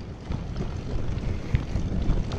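Bicycle rolling over a bumpy dirt trail covered in dry leaves, heard from a camera on the bike: a steady tyre rumble with frequent knocks and rattles from the frame, and wind on the microphone.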